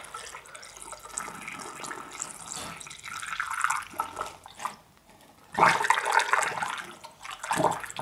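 Central heating inhibitor liquid poured from a plastic bottle into a plastic funnel and running down through a pipe into a radiator: a steady trickling, which stops briefly about five seconds in and then comes back louder.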